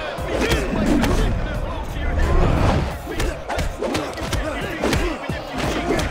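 Fight-scene soundtrack: a quick run of punch and kick impact effects over the film's music score, with shouting from the crowd.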